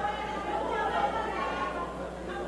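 Indistinct chatter of many voices talking at once in a large hall, with no single speaker standing out.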